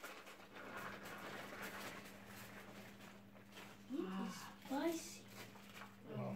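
Faint patter and rustle of cooked white rice being tipped from a glass bowl onto banana leaves, then two short rising vocal exclamations about four and five seconds in.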